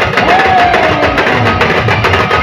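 Live Adivasi band playing rodali music: several drums beaten with sticks and a bass drum keep a fast, steady beat. Over them a held melody note slides slowly down in pitch during the first second and a half.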